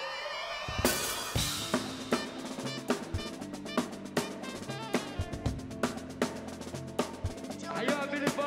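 Live band music: rising held tones build, then about a second in the drums come in with a sharp hit and a steady beat, with alto saxophone playing over it.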